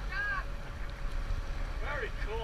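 Steady low rumble of a sport-fishing boat at sea, with wind buffeting the microphone. A short voice fades out at the start and another begins near the end.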